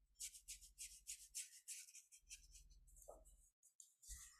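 Faint, quick back-and-forth scrubbing of a paintbrush's bristles on paper, lifting and softening dry gouache. The strokes stop shortly before the end.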